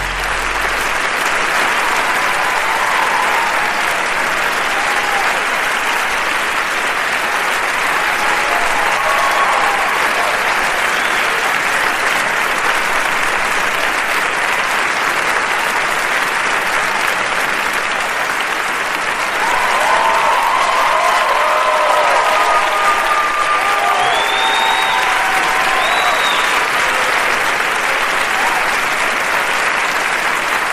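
Live concert audience applauding steadily as the song ends, the last chord dying away in the first second. Cheering and shouts rise about two-thirds of the way through, with two short whistles near the end.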